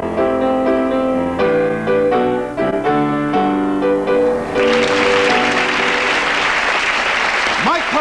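Solo grand piano playing the final chords of a theme, the last note ringing on as studio audience applause breaks out about halfway through and carries on loudly.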